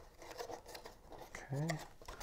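Light rustling and small crinkles of cardstock as hands handle and press a glued paper box, with a few scattered ticks; a spoken "okay" near the end.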